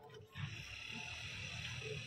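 Milk squirting into a partly filled steel bucket during hand milking, a steady frothy hiss over a low rumble that starts about half a second in.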